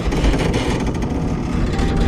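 Animated sound effect of a wall breaking apart: a loud, low, crumbling rumble as a hole opens in it. A held music note comes in near the end.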